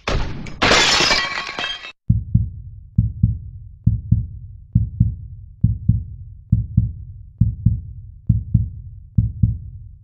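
Intro sound effects: a loud crash like breaking glass lasting about two seconds, then a low heartbeat-like double thump repeating evenly about once a second.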